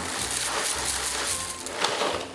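Dry Rice Chex cereal pouring out of its box into a glass mixing bowl, a steady rattling rush of many small pieces that keeps going without a break.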